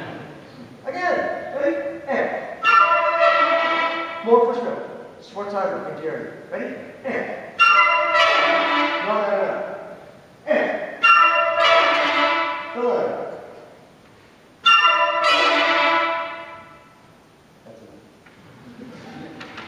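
A wind band's brass, trumpets prominent, playing a series of loud accented chords. Each chord is struck sharply and dies away over a second or two in a reverberant hall, with shorter notes in the first couple of seconds.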